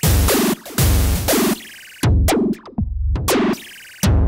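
Roland JX-08 synthesizer's sequencer playing a drum pattern made from a single synth patch: deep kick-like thumps and noisy snare-like hits, in a loop that repeats about every two seconds.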